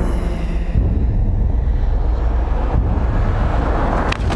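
A loud, steady low rumble with a hiss over it, a sound-design drone under a horror trailer's montage.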